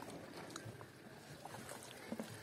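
Faint eating sounds: fingers mixing and squishing rice and curry on a plate, with soft scattered clicks over a steady background hiss.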